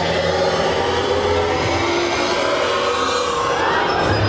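Haunted-maze soundtrack from loudspeakers: a steady low drone under dark, sustained music, with a sweeping effect that rises in pitch near the end.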